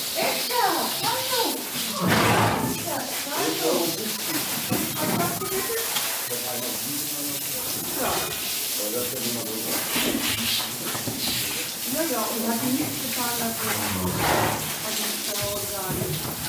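People talking over the steady hiss of a water hose spraying down a horse in a tiled wash stall.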